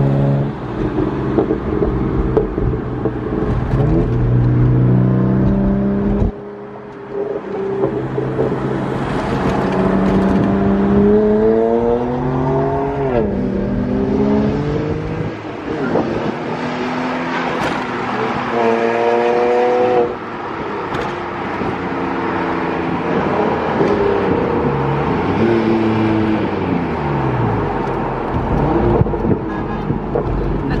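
Car engine accelerating, its pitch climbing and then dropping back sharply at each gear change, over steady road noise.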